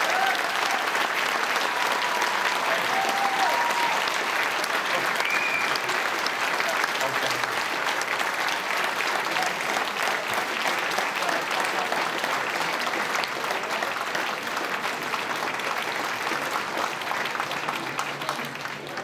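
Audience applauding steadily for the whole stretch, easing off slightly toward the end.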